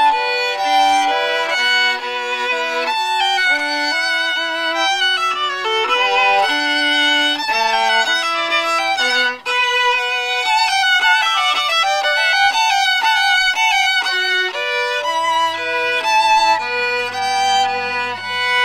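Two fiddles playing a tune together as a bowed duet, with a momentary break in the sound about halfway through.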